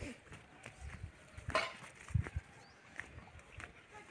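Footsteps on bare soil, an irregular run of soft thuds, with two louder knocks about a second and a half and two seconds in.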